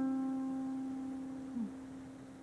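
Harp strings ringing and slowly dying away after the last plucked notes of the piece, one low note sustaining longest. About a second and a half in comes a brief, small falling twang.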